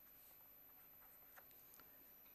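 Faint scratching of a pen drawing short strokes on paper, a few brief strokes against near silence.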